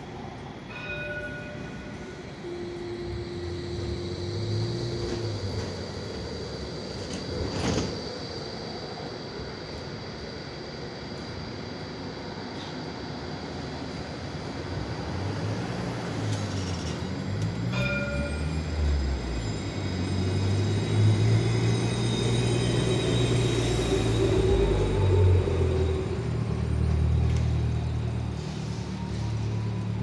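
A city tram at a stop: short electronic door beeps about a second in and again partway through as the doors close. Then it pulls away, with the electric traction motors humming and a whine that rises steadily in pitch as it gathers speed, growing louder.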